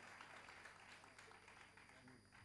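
Faint audience applause, the claps thinning out and dying away.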